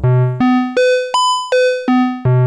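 Novation Circuit Mono Station's analogue filter self-oscillating at full resonance with the oscillators turned down, driven through its distortion into a bright, buzzy square-wave-like tone. Short notes step up an octave at a time from about 125 Hz to about 1 kHz and back down, showing that the filter tracks the keyboard pitch.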